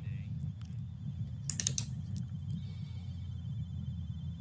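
A low steady hum with scattered faint clicks, and a short run of sharper clicks about one and a half seconds in.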